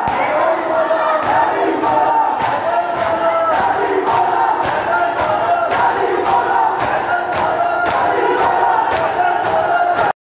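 A crowd of men chanting a noha (mourning lament) together, with loud rhythmic matam, hands slapping on chests in unison about two to three times a second.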